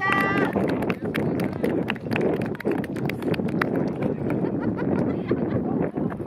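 The dance music ends about half a second in, followed by scattered hand clapping and voices as the dancers bow at the end of the performance.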